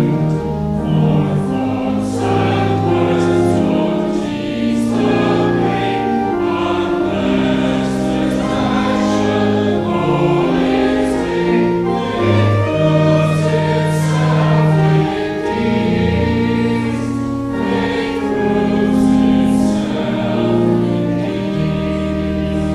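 Mixed choir of men's and women's voices singing a slow church piece in harmony, with long held chords that change every second or so.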